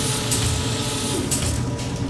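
Produced sound effects of an animated transition sting: a mechanical whirring and low rumble under a steady hiss, with a few short surges.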